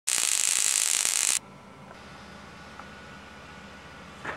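High-voltage electric arc crackling and hissing onto a foil-covered tube for about a second and a half, then cutting off suddenly. A faint low steady hum follows.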